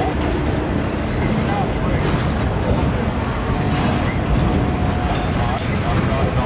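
Loaded flatcars of a Norfolk Southern freight train rolling past close by: a steady, loud rumble of steel wheels on rail.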